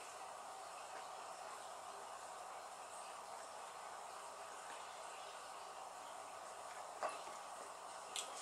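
Faint steady room hiss, with a single short click about seven seconds in.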